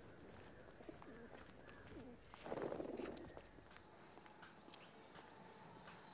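Faint bird calls: low calls, the loudest about two and a half seconds in, then short high chirps in the last couple of seconds.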